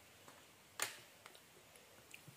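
A few faint clicks, with one sharper click a little before the middle, against a quiet room.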